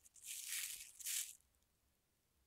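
Thin plastic film crinkling as it is handled, in two quick rustling swells lasting just over a second in all.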